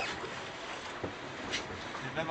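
Steady rushing noise of a sailboat under way, heard from inside its wooden cabin, with a few short sharp clicks from the interior.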